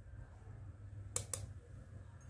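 Two quick light clicks a little over a second in, from a plastic measuring spoon knocking against a metal mesh flour sieve as a spoonful of baking powder is tipped in. A faint low hum runs underneath.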